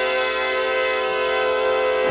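Orchestral music with brass holding one long, loud chord.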